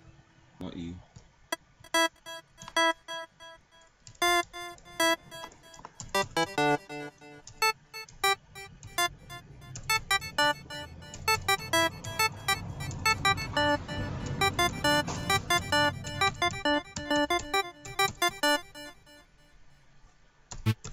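Synth lead presets in FL Studio's Harmless synthesizer being auditioned one after another. Short, evenly spaced synth notes at first, then faster arpeggiated note runs with a fuller sound from about halfway in, stopping just before the end.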